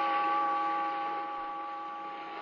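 A tolling bell ringing out after a single stroke, its deep tone fading slowly.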